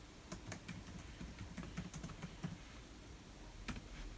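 Typing on a laptop keyboard: a quiet run of irregular key clicks as an address is entered.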